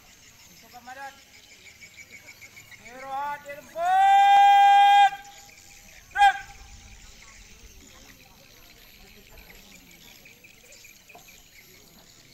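A man's voice shouting a drill command to put the ranks at ease: a few short rising syllables, then one long drawn-out held syllable lasting about a second, then a short sharp final word about a second later, in the manner of "istirahat di tempat, grak!". Faint insect chirring runs underneath.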